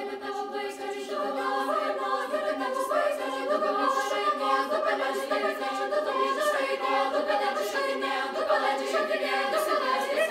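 Youth choir of young treble voices singing a Lithuanian folk-song arrangement, the sound growing fuller about a second in.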